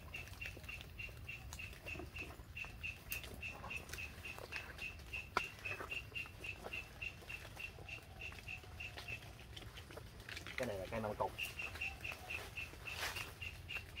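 A small bird's high pipping call, repeated evenly about five times a second and pausing for a couple of seconds near the end, over faint clicks and rustles of branches as a man climbs a tree.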